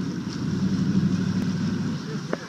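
Motorboat engine running steadily under way as the boat tows a rider, a constant low drone with wind and water noise over it.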